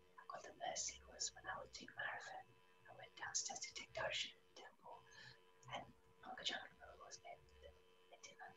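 Faint, soft speech, much of it close to a whisper, over a faint steady hum.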